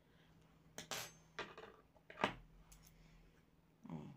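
A few short, sharp metallic clicks and clinks as a steel crochet hook is put down and a pair of scissors is picked up and opened, the loudest about two seconds in.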